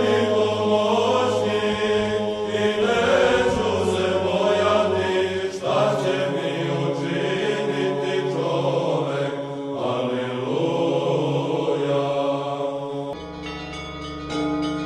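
Chanting male voices over a steadily held low drone note, in the style of Orthodox church chant. It cuts off abruptly near the end and gives way to bells ringing.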